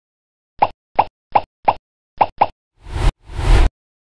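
Logo-intro sound effects: six quick pops in an uneven rhythm, followed by two loud whooshes that stop sharply just before the end.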